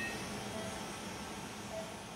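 Steady hiss of operating-room equipment and ventilation while a microwave ablation generator runs, just started at 100 watts, with two faint short tones, one about half a second in and one near the end.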